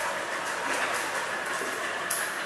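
A steady rushing background noise, even and unbroken, with no distinct knocks or voices.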